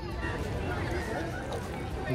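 Faint shouts and calls of children playing in the water, over a low rumble of wind on the microphone.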